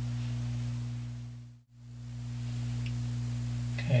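Steady low electrical mains hum, fading smoothly to near silence about a second and a half in and then back to the same steady hum.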